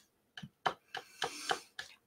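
A person stifling a laugh: a few short, soft puffs of breath and mouth clicks, spread unevenly over about two seconds.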